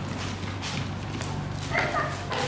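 Outdoor ambience of a children's football practice: a few light thuds from balls being kicked or footsteps, and a child's voice calling near the end, over a steady low hum.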